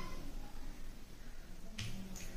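Faint room noise, then a single sharp click with a dull knock beneath it near the end, from a small object being handled.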